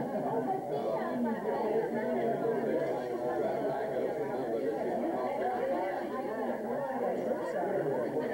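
Crowd chatter: many people talking at once in a room, no single voice standing out.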